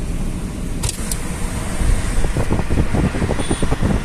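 Road and engine noise inside a moving car on a highway: a steady low rumble, with a couple of brief clicks about a second in and uneven low thumps in the second half.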